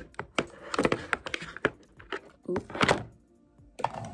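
Clear plastic tub of Wetline Xtreme styling gel being handled and opened: a string of sharp plastic clicks and knocks, busiest about two and a half seconds in.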